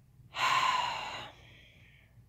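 A woman's heavy sigh: one breathy exhale of about a second that trails off.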